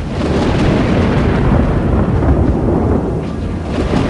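Loud, steady low rumble of wind buffeting the microphone, with a noisy hiss spread over the higher range.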